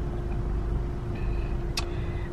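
Steady low hum and rumble inside a parked car's cabin, with one sharp click about three-quarters of the way through.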